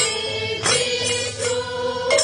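Chanted group singing on a held note, over sharp percussion strikes that come about every 0.7 seconds.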